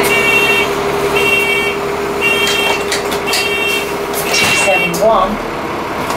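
Alexander Dennis Enviro400 bus door warning buzzer beeping five times, about once a second, over the bus's idling engine and a steady hum that stops near the end. The beeps warn that the doors are moving, as the bus gets ready to leave the stop.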